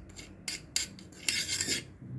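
Steel spoon scraping against the bottom of a stainless steel bowl while stirring citric acid crystals into a little water: a few short rasping strokes, the longest just past the middle.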